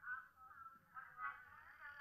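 A faint, thin voice as if heard down a telephone line, in short broken syllables.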